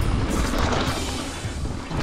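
Background music over the steady rumble of a mountain bike rolling along a dirt trail.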